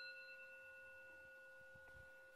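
A meditation bell ringing out faintly after a single strike: a clear tone with several overtones, slowly fading. It marks the close of a silent sitting meditation.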